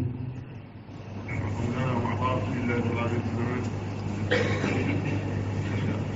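Quieter speech than the main speaker's, over a steady low hum.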